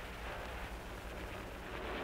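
Steady background hiss with a low hum from an old optical film soundtrack. No distinct event is heard.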